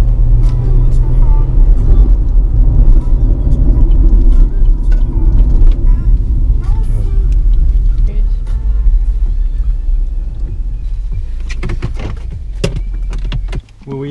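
Car cabin noise: a steady low engine and road rumble that eases as the car slows, with several sharp clicks near the end, then the rumble cuts off suddenly as the car is parked and switched off.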